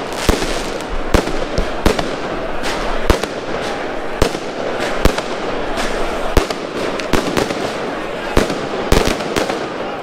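Firecrackers going off among a large crowd of football supporters: irregular sharp bangs, one or two a second, over the steady noise of the crowd's voices.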